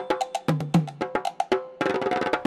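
Percussion break in a Sinhala New Year folk song: a quick run of sharp, dry clicking strokes, about eight to ten a second, with a couple of deeper drum beats about halfway through and no singing.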